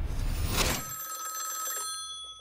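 A short whoosh about half a second in, then a telephone ringing with a steady high electronic tone.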